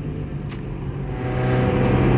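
A 1989 Mazda Miata's engine running in gear while the car is under way, heard from the open cockpit. About a second in, it grows louder and its note fills out as the throttle is opened.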